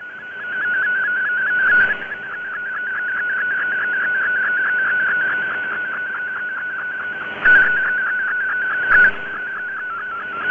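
MFSK32 digital picture transmission heard over a shortwave receiver: a single high data tone that warbles rapidly up and down in pitch as it sends a colour image line by line, over a bed of band hiss. Two short bursts of static break in near the end.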